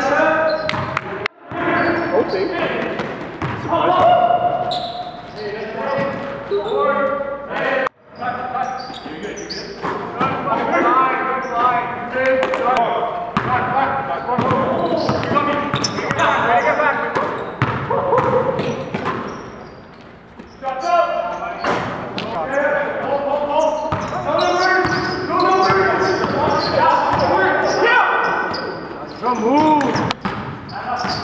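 A basketball bouncing on a gym floor during play, with players' voices throughout, in a large gym.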